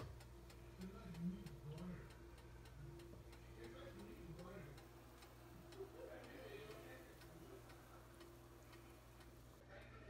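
Near silence: faint room tone with a steady low hum and a faint rapid ticking, about three to four ticks a second. Faint muffled voices come in about a second in and again past the middle.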